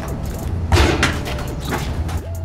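Background music with a steady low beat, and a little under a second in a single dull thump of the basketball as the shot comes down.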